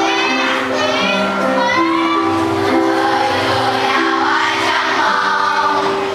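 A large children's choir of primary-school pupils singing a song together, holding long notes.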